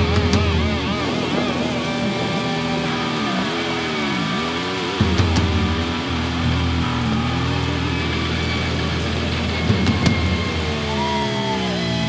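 Heavily distorted electric guitar holding notes that swoop down in pitch and back up, over a low droning bass. A few sharp hits land around the middle and near the end.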